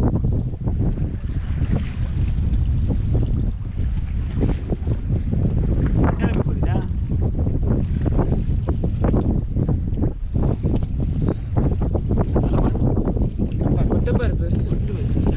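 Wind buffeting the microphone on a small fishing boat at sea, with the sea washing against the hull and many short knocks and clicks from the boat and the handline being worked.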